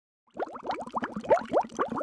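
Underwater bubbling sound effect: a quick, dense run of rising bubble blips that starts about a third of a second in.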